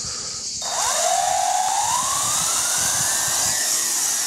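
WLToys V333 Cyclone II quadcopter's electric motors and propellers spinning up for takeoff: a whine starts about half a second in and rises in pitch for about three seconds before levelling off, over a steady propeller hiss.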